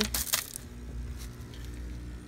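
Small polished pebbles clattering and crunching against each other as a hand spreads them across the bottom of a plastic tub, dying away after about half a second, followed by faint steady background noise.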